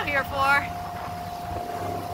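Motorboat engine running steadily under way, a constant whine over a low drone, with the boat's wake churning and rushing.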